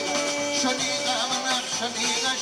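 Live Pontic Greek folk dance music, the melody led by a Pontic lyra (kemenche) with a held note and quick wavering ornaments over the band.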